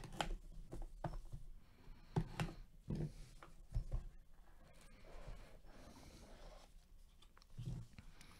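Gloved hands opening a sealed cardboard trading-card box: faint scattered clicks, scrapes and rustles of cardboard, busiest in the first four seconds and sparse after.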